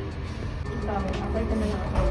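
Café ambience: indistinct background voices over a steady low rumble.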